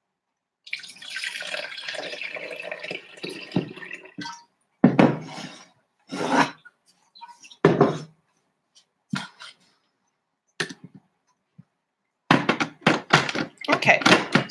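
Milk poured from a plastic jug into an espresso machine's milk carafe, a steady pour lasting about three and a half seconds. It is followed by several short, separate knocks of plastic parts being handled.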